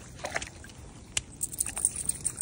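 Irregular wet squelches, crunches and rustles of feet moving through waterlogged grass and mud. The sounds come closer together in the second half.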